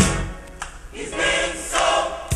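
Gospel choir singing with band accompaniment. After an accented beat at the start, the bass and drums drop out and the choir swells on a held chord about a second in.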